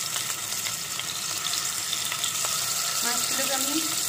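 Turmeric-rubbed rohu fish pieces frying in hot mustard oil in a kadai: a steady sizzle with fine crackles, growing slightly louder.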